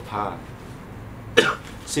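A man coughs once, sharply, about one and a half seconds in; it is the loudest sound here.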